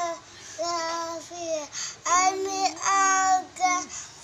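A young boy singing sholawat, an Islamic devotional song, unaccompanied, in short phrases of held notes. He sings louder in the second half.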